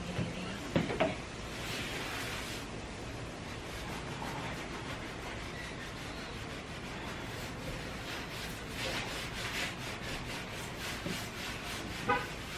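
A disinfecting wipe rubbed back and forth across a wooden tabletop, a series of swishing strokes that come quicker and more evenly in the second half. There is a brief knock about a second in.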